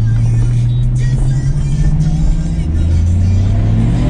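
Car engine running steadily while driving, heard from inside the cabin, with background music playing over it.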